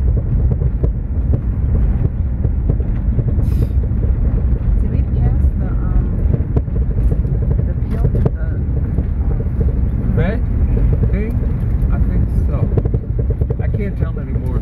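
Inside a car driving on an unpaved dirt detour road: a loud, steady low rumble of tyres and engine, with frequent small knocks and rattles as the car goes over the rough surface.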